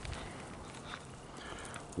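Faint footsteps on a dirt road over quiet outdoor background noise, a few soft steps.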